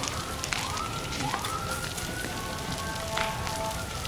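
Brush and bamboo fire burning close by: a steady rushing hiss with scattered sharp crackles and pops. A faint whistle-like tone rises and holds in the background.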